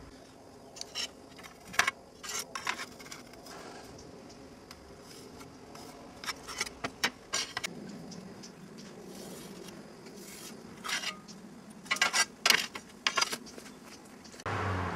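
Ceramic tiles clinking and knocking against one another and the wooden tabletop as they are handled and stacked, in scattered sharp taps with quiet stretches between.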